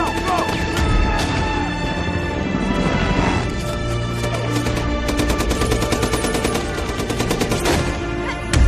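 Film battle soundtrack: rapid automatic gunfire over a sustained music score, with the firing thickest in the second half.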